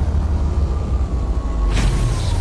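Logo-intro sound effect: a deep, steady rumble with a faint falling tone above it, and a whoosh near the end.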